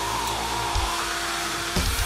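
Heavily distorted electric guitar holding a sustained, noisy chord, with a high tone wavering above it. Near the end the drum kit comes in with fast, even kick-drum strokes as the full band starts up.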